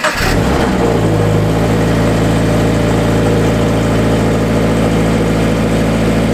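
Toyota GT86's 2.0-litre flat-four boxer engine on a cold start: it catches on the push-button start, flares briefly in the first second or so, then settles to a steady idle.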